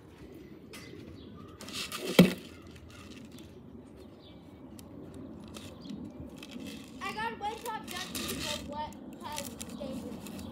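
Indistinct children's voices in the background, with one sharp thump about two seconds in.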